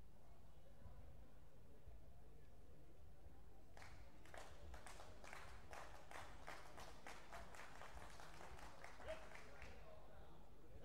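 Scattered applause from a small number of spectators, starting about four seconds in and dying away near the end, over a steady low hum.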